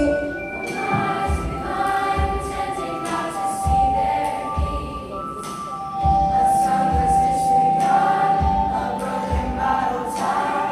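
A youth choir singing in harmony, with held notes over a recorded or live accompaniment that carries a low beat roughly once a second.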